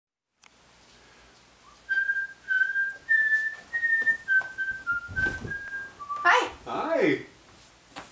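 A man whistling a slow tune of about nine held notes, starting about two seconds in. Near the end a voice speaks briefly.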